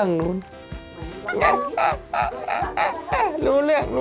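Newborn baby crying: a quick run of about five short, high cries, beginning a little over a second in.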